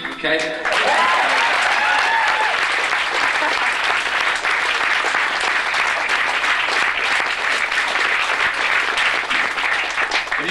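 Live audience applauding and cheering at the end of a song. The last guitar note cuts off in the first half-second, then clapping fills the rest, with a few shouts about a second or two in.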